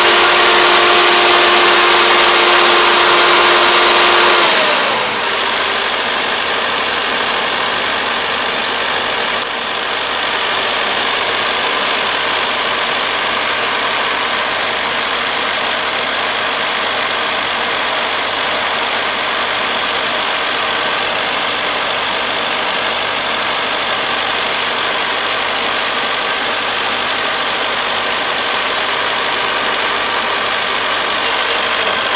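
Kubota ER470 combine harvester running close by as it works. A steady whine falls in pitch and the sound eases about four to five seconds in, and the machine then runs on with an even mechanical noise.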